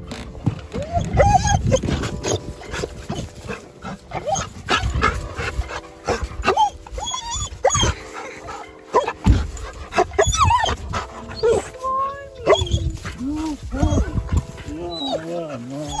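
A dog whining and yelping in excited greeting, many short rising-and-falling calls, mixed with a person's high-pitched talk to the dog; faint music runs underneath.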